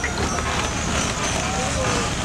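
Outdoor voices of people talking over a steady low rumble, with vehicle noise mixed in.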